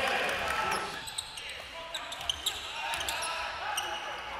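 Live basketball game sound on a hardwood court: a ball being dribbled, with short sharp clicks and squeaks over a steady murmur of crowd voices.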